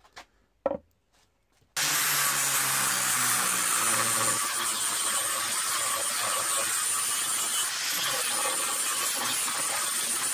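Angle grinder with an abrasive disc sanding and shaping a wooden hammer handle: a steady grinding rasp with a thin high motor whine. It starts about two seconds in, after a near-silent moment with a couple of faint clicks.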